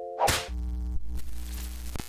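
Channel-intro sound effects: a sharp whoosh about a quarter second in cuts off held mallet-chime notes. It is followed by a low, buzzing glitch-style electronic tone with a rumble beneath it.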